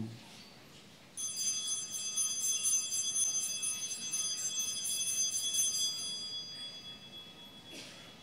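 Altar (sanctus) bells ringing at the elevation of the host after the consecration. A cluster of small bells is shaken repeatedly from about a second in, then left to ring out and fade near the end.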